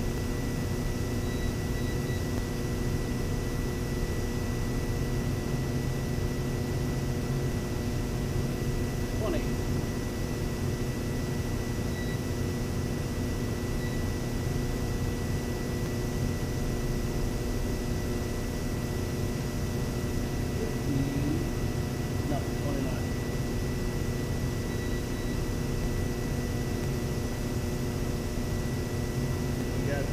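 Steady, even mechanical drone with a faint constant high-pitched tone running through it.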